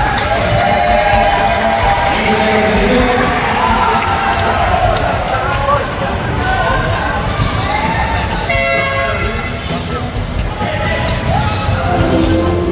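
Live basketball in a gym: the ball bouncing, with players and spectators shouting throughout. A horn sounds once for under a second, about two-thirds of the way through.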